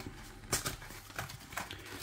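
Cardboard ready-meal box being opened by hand: a few short, quiet crackles and scrapes of card as the end is pulled open and the plastic tray is slid out.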